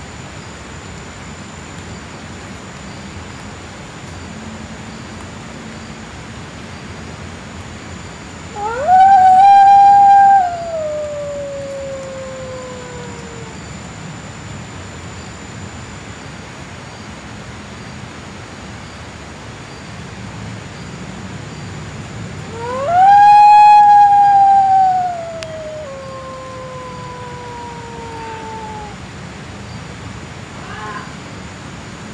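An animal howling twice, each howl a long call that rises quickly, holds, then slides slowly down in pitch: once about eight seconds in and again near the middle of the second half.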